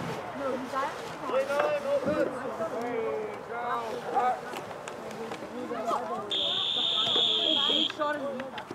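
Several voices of players and onlookers calling out over one another, then a referee's whistle blown once, held for about a second and a half near the end, signalling the play dead.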